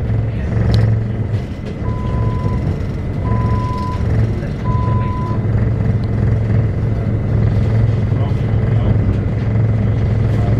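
Passenger train running, heard from inside the carriage: a steady low rumble of wheels and traction. A little under two seconds in, a high electronic beep sounds three times, each under a second long and about a second and a half apart.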